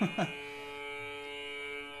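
Background music holding a sustained, droning chord that fades away near the end, with the tail of a man's voice at the very start.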